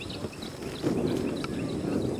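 Outdoor ballfield ambience between pitches: a run of faint, short, high chirps over a low, steady background murmur that grows slightly louder about a second in.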